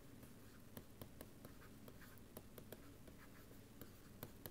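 Faint, irregular ticks and light scratches of a stylus writing on a pen tablet, over near-silent room tone.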